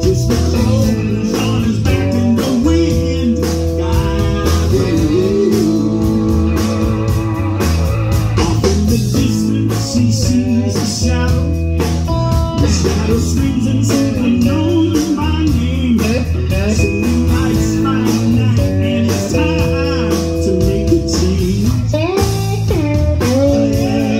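Live blues-rock band playing: electric guitar, electric bass and drums with a steady beat, and a man singing into a microphone.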